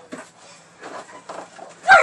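Scuffling and rustling of bodies and bedding in a play fight on a bed, ending in a short, loud cry from one of the two just before the end.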